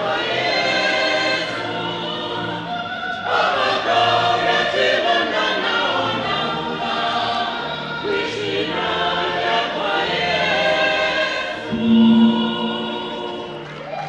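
Church choir singing, many voices together in phrases of a few seconds each.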